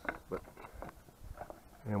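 A few light clicks and knocks of plastic and metal generator parts being handled and test-fitted, between brief words.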